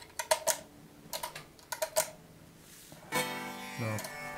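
Clicks and taps of a guitar pedal and its cables being handled, heard through the guitar amp, then a steady buzz lasting under a second near the end.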